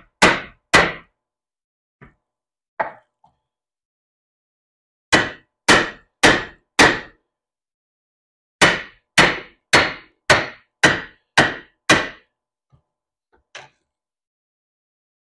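Hammer blows on a bent 28-inch steel chainsaw bar clamped in a bench vise, struck to straighten it. Sharp, ringing strikes about two a second: two at the start, two faint taps, then a run of four and a run of seven, with pauses between.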